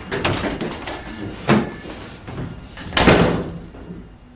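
A door being opened and shut, with a sharp knock about one and a half seconds in and a louder, longer bang about three seconds in.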